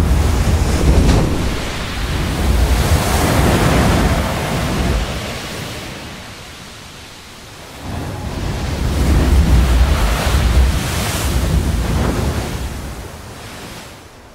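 Heavy surf breaking against a rocky coast, with a deep rumble. It swells in two long surges, the first in the opening seconds and the second from about eight seconds in, easing off between them.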